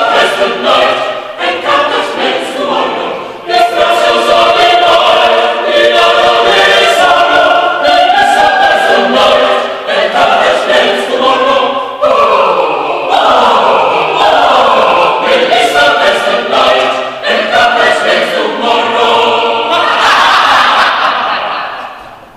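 Mixed chamber choir singing in several parts, with short breaks between phrases, fading out at the end.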